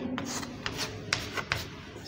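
Chalk writing on a chalkboard: short scratching strokes with a few sharp taps as figures are written and crossed out.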